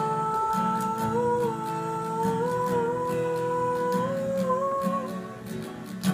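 A woman humming a slow, wordless melody over strummed acoustic guitar. Her held notes step gradually upward and fade out about five seconds in, while the strumming carries on.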